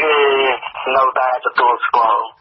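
Speech only: a voice reading Khmer-language radio news.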